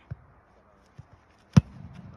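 A football is kicked: one sharp boot of a foot on the ball about one and a half seconds in. It follows a couple of faint taps from the kicker's approach steps.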